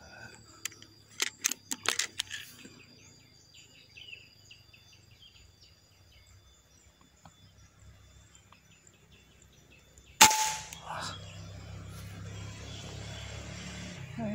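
A PCP air rifle fires once, a single sharp crack about ten seconds in and the loudest sound here. Before it come a quick run of sharp clicks about a second in and faint bird chirps.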